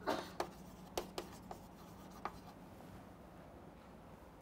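Chalk writing on a chalkboard: a handful of short, faint taps and scratches over roughly the first two seconds.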